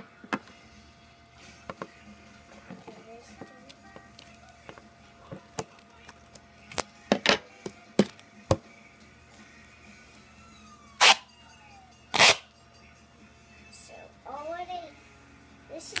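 Duct tape being pulled off the roll: two loud tearing pulls a little over a second apart, after lighter crackles and taps as the tape is handled and pressed down. A voice comes in near the end.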